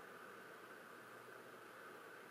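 Near silence: room tone with a faint steady hiss.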